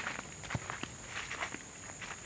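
Footsteps on a leaf-littered dirt forest trail: a handful of uneven steps.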